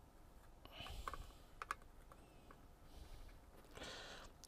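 Very quiet soldering work on a circuit board: a few faint clicks and taps from the soldering iron and solder wire against the board, with a brief soft hiss about a second in.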